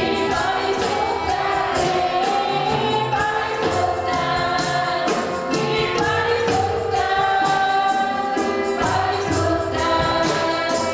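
Live gospel worship song: a woman singing a sustained melody into a microphone, accompanied by violin and electronic keyboard over a steady beat.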